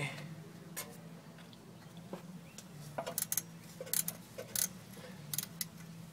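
Spanner working loose the top nut of a rear shock absorber from under a van: irregular small metallic clicks and taps, several in a cluster in the second half.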